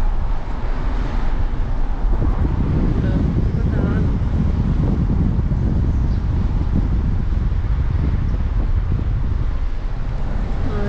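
Steady low rumble of a car in motion, with road noise and wind buffeting the microphone, heard from inside the car.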